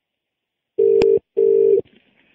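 British telephone ringing tone heard down the line: one double 'brr-brr' burst about a second in, the sign that the outgoing call is ringing at the other end and has not yet been answered. A sharp click on the line comes during the first burst.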